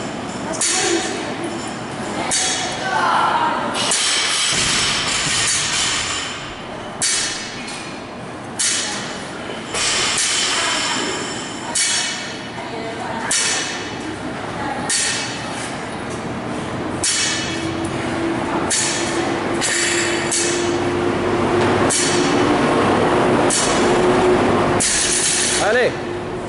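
Indistinct voices in a gym, with occasional metallic clinks; a steady low hum comes in during the second half.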